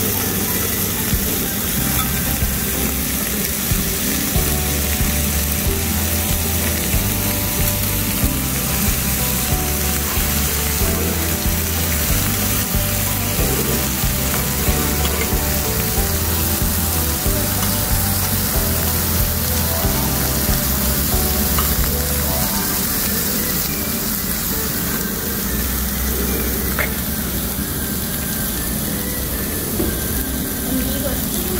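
Pork belly and vegetables sizzling steadily on a hot cast-iron pot-lid griddle, with background music playing over it.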